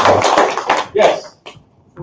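Audience applause dying away, thinning to a few last claps about a second in and ending soon after.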